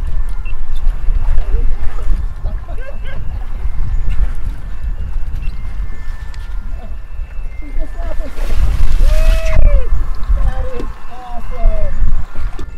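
Wind buffeting the microphone over sloshing sea water, with a splash about eight and a half seconds in. Wordless excited voices call out in the second half.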